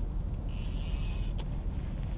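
Fishing reel's clicker buzzing for about a second as a big catfish pulls line off the reel, ending with a sharp click, over a steady low rumble.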